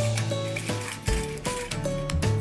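Background music: a simple melody of held notes changing about every half second over a steady bass.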